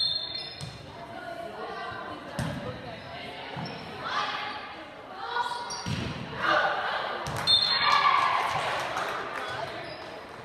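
Volleyball rally in a gym: a few sharp, echoing hits of the ball, with a short high referee's whistle at the start and another about three-quarters of the way in. Spectators' cheering and shouting swells from the middle and peaks as the point is won.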